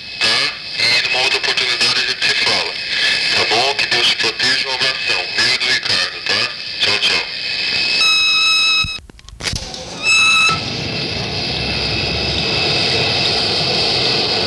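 Telephone answering-machine tape: an indistinct voice over line hiss, then an electronic beep about eight seconds in, nearly a second long. A short dropout and a second, shorter beep follow, marking the change to the next recorded message, and steady hiss runs after it.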